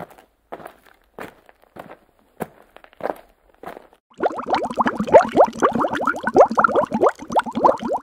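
Logo-animation sound effects: a string of short whooshes about every half second, then, from about four seconds in, a loud dense run of quick chirping pitch glides.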